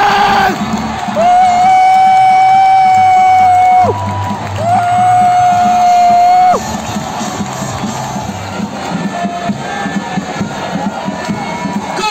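Two long, loud horn blasts, each held steady for a couple of seconds and dropping in pitch as it cuts off, over a cheering stadium crowd celebrating a goal. After the second blast the crowd goes on cheering and shouting more quietly.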